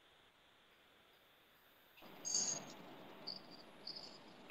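Near silence, then from about halfway a faint background hiss with a few short, faint high-pitched chirps.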